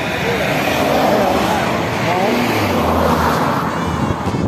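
Motorcycle ride heard from the rider's position: wind rushing over the microphone, with the engine running underneath.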